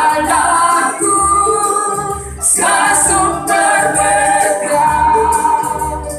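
Women's vocal group singing an Indonesian gospel worship song in unison through microphones, over a keyboard accompaniment.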